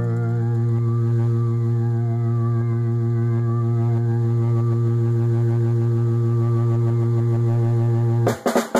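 A single sustained, low, droning musical note held at a steady pitch, with a slight waver in its upper overtones; a lower overtone drops away about half a second in.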